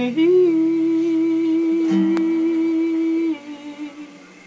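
A woman humming one long held note over a sustained acoustic guitar chord. The chord is struck again just before two seconds in, and the humming stops a little past three seconds.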